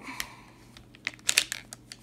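Light plastic clicks and clacks from a small tabletop hockey toy as its flipper levers are worked and its plastic ball knocks about. There are a few scattered clicks, with a quick cluster of louder ones about a second and a half in.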